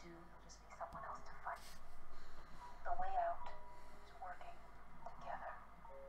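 Indistinct dialogue from a TV episode playing back over speakers in a small room, with a louder stretch in the middle.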